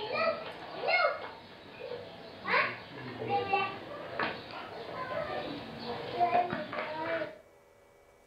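Children's voices talking and calling out, with other people's voices around them. The sound cuts off abruptly about seven seconds in.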